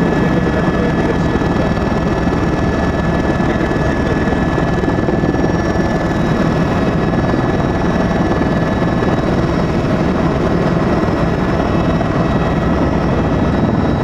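Steady engine noise heard from inside a small aircraft's cabin in flight, unbroken and loud, with a few faint steady whining tones over it.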